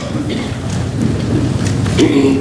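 A congregation sitting down in pews: a low rumble of shuffling and rustling, with scattered knocks and creaks.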